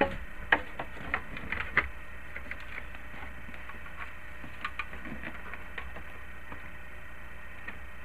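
Plastic dash trim clicking and knocking as a trim piece is pushed into place beside the steering column: a few sharp clicks in the first two seconds, a few fainter ticks around the middle, over a low steady hum.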